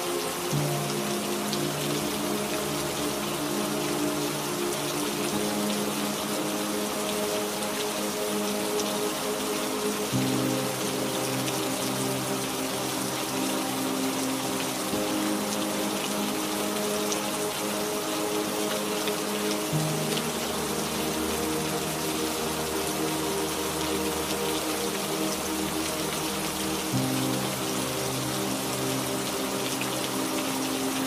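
Steady rain falling, mixed with slow ambient music: long held chords that shift a few times.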